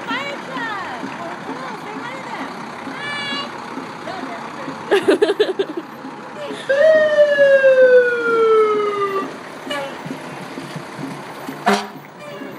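Fire engine siren sounded briefly as the truck passes close by: a short choppy burst about five seconds in, then a single falling wail lasting about two and a half seconds.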